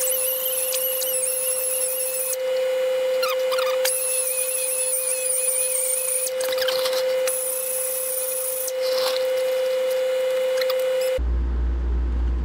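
Pneumatic die grinder running at a steady whine, with a higher squeal wavering as the bit grinds metal. It is opening up a bushing bore in a Dana 30 axle housing that is too tight for the bushing. It cuts off shortly before the end.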